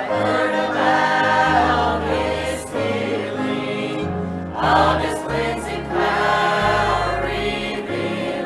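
A church choir of mixed voices singing together, with sustained low accompaniment notes beneath the voices that change every second or so.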